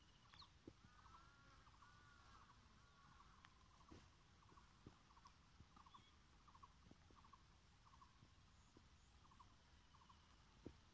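Near silence with faint, distant bird calls: a few rising-and-falling calls about a second in, then short call notes repeating about twice a second. A few soft clicks.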